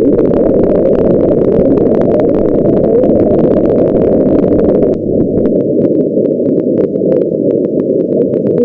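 Shortwave radio receiver noise through a narrow filter: a dense hiss with frequent sharp static crackles and no clear signal. About five seconds in the sound changes abruptly and the higher hiss cuts out, as the receiver is switched from AM to another demodulation mode.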